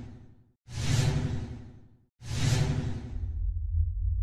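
Whoosh sound effects for an animated title sequence: one fades out, then two more follow about a second and a half apart, each swelling quickly and dying away. After the last one a deep, steady rumble sets in.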